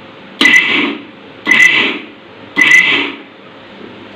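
Mixer grinder pulsed three times, each short burst a high motor whine that starts suddenly and winds down, crumbling moistened wheat flour for puttu in its steel jar.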